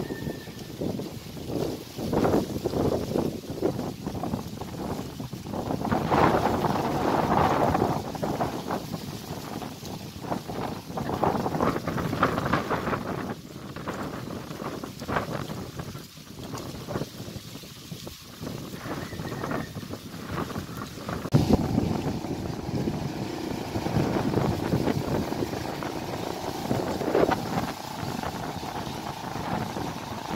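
Gusty wind buffeting the microphone, rising and falling. About two-thirds of the way through, a steady hum of a few level tones joins it.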